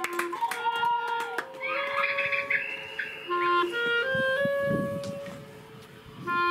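A melody of held notes on a wind instrument, stepping from pitch to pitch at an unhurried pace.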